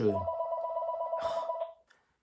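A phone ringing with an incoming call: a steady electronic ring with a fast warble, held for about a second and a half and then cut off, with a brief rustle partway through.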